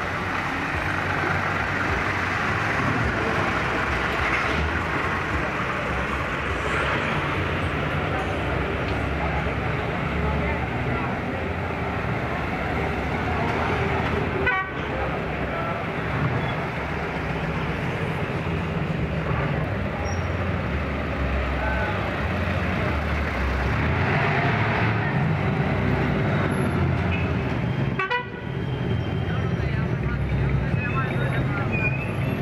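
Engines of 1950s American convertibles running as the cars pull away slowly one after another, a steady low rumble, with car horns tooting.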